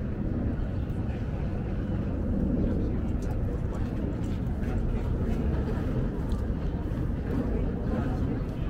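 Steady low rumble of outdoor urban ambience, with a few faint ticks.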